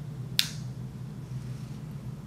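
A single sharp click a little under half a second in, over a steady low hum.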